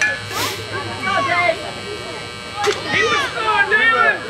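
Background chatter of several voices, some high and child-like, with a short hiss less than a second in.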